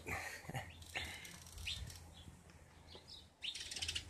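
A short laugh, then a quiet stretch with a few faint bird chirps, and a brief rustle near the end.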